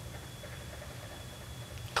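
Quiet room tone: a steady low hum with a faint, thin high-pitched whine, and no distinct sound event.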